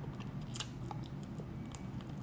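A person gnawing and sucking on a chicken foot, giving a few short sharp crunching clicks, the loudest about half a second in, over a faint low steady hum.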